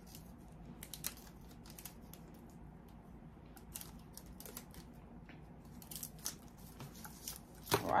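Faint, irregular clicks and light rustling from hands handling small clear plastic pieces and peeling glue dots off their roll.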